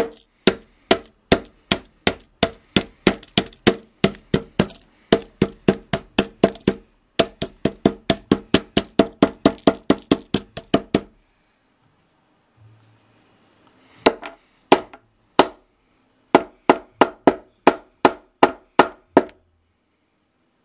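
A hammer striking a plastic pocket calculator over and over in sharp, evenly spaced blows, about two to three a second. The blows break off for about three seconds midway, then resume.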